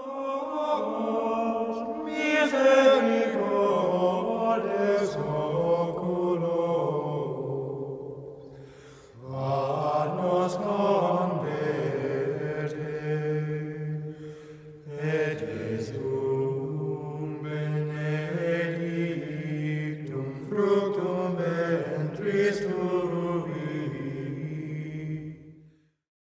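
Sacred chant sung over a held pitch, in long phrases broken by short breaths, fading out near the end.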